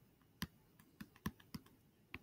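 Faint, irregular taps of a stylus on a tablet screen while handwriting, about five sharp clicks over a second or so.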